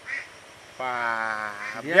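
A man's voice giving a drawn-out nasal 'ehh' at one steady pitch for about a second, then a short syllable at the end.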